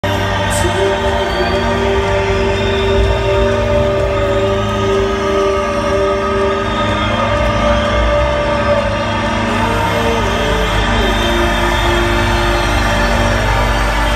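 Slow atmospheric synthesizer intro of a rock song: long held chords and slowly gliding notes over a steady low drone, with no drums.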